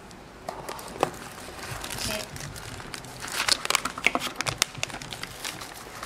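Plastic packaging bags crinkling and rustling as they are handled, with scattered small clicks; the crinkling gets busier and louder about halfway through.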